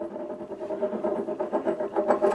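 A coin spinning on a wooden tabletop: a steady ringing whirr with a fast, even rattle as it wobbles on its edge.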